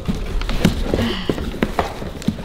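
Ribbon and wrapping paper on a gift box being handled as the ribbon is untied: a scatter of irregular sharp taps and crinkles.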